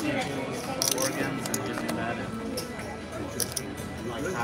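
Casino chips clicking as they are stacked and set down on the felt table, a few scattered sharp clicks over a background of casino chatter and music.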